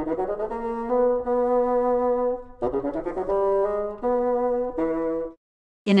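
Solo bassoon playing a short melodic passage in two phrases: a quick rising run into held notes, a brief break about two and a half seconds in, then a phrase of quicker notes that stops about a second before the end.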